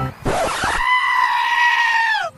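A loud, drawn-out scream. It starts with a short rough burst, holds one high pitch for over a second, then falls away at the end.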